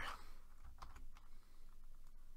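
Faint, irregular clicking of a computer keyboard and mouse at a desk, a few scattered clicks over about two seconds.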